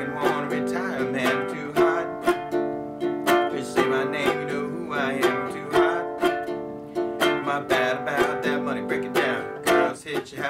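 Baritone ukulele strummed in a steady, rhythmic pattern, alternating between D minor and G chords.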